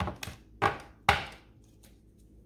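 Tarot cards being handled against a tabletop: about four short, sharp taps or slaps, the loudest a little over a second in.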